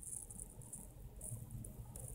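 Faint, high-pitched insect chirping that comes and goes.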